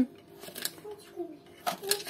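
A metal teaspoon clinking lightly against a glass jar of salt a few times, about half a second in and again near the end.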